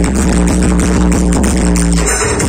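Loud electronic dance music with heavy bass and a steady beat, played through a truck-mounted DJ speaker stack.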